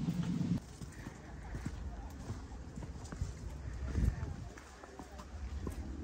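Footsteps on a rocky hiking trail: a run of light, irregular taps of shoes on stone. A low rumble at the start cuts off suddenly after about half a second, and a short low burst comes about four seconds in.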